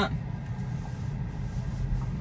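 Low, steady road and tyre rumble heard inside a Tesla electric car's cabin as it creeps out onto the road.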